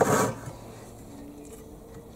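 A single short stroke of a 15-teeth-per-inch pull saw cutting through a wooden board at the very start, then quiet.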